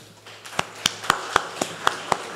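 Hand claps close to a microphone: sharp, evenly spaced claps about four a second, starting about half a second in, over fainter scattered applause.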